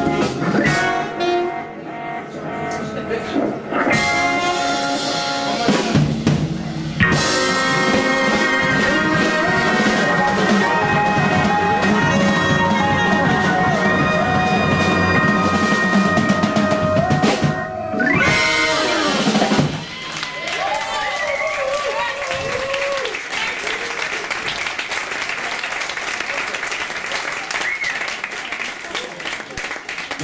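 Live organ jazz band, with trumpet and alto and tenor saxophones over Hammond organ, electric guitar and drums, playing the closing bars of a tune: a long held chord, then a falling run. From about two-thirds of the way in, the audience applauds and cheers.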